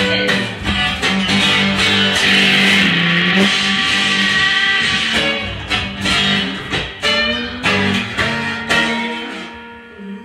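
Improvised experimental music: banjo notes plucked over a steady low electronic drone. A band of hiss-like noise swells in the first half and then fades. The music thins out and grows quieter near the end.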